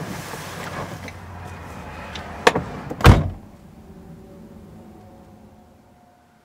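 Car door being shut from outside, heard from inside the cabin: rustling movement, a sharp click about two and a half seconds in, then the door closing with a heavy thump about half a second later.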